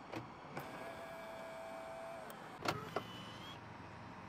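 Small electric motors on a Li Auto L8 SUV. After a click, one motor whines steadily for about a second and a half. Near the end come two sharp clunks and a brief higher whine.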